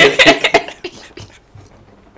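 People laughing: loud breathy bursts of laughter that die away into quiet gasping within about a second and a half.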